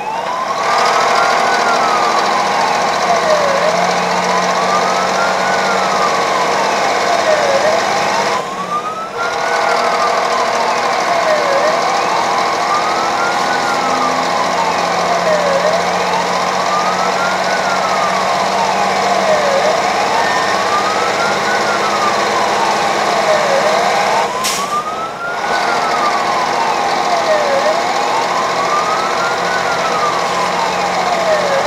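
Fire engine siren wailing, its tone rising and falling in a slow cycle of about four seconds, heard from inside the cab over the truck's engine and road noise.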